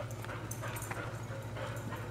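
Faint sounds from a golden retriever–collie mix dog over a steady low hum.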